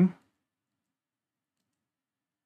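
Dead silence: the audio cuts to nothing just after the last word ends.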